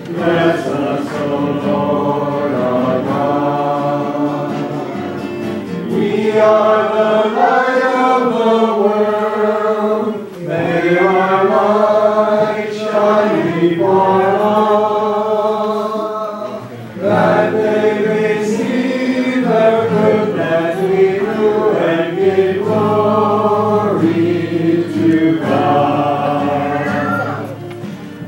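Church congregation singing a hymn together, phrase by phrase, with brief breaks between lines.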